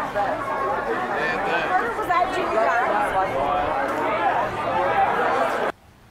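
Several people talking at once, an overlapping chatter of voices, which cuts off abruptly near the end.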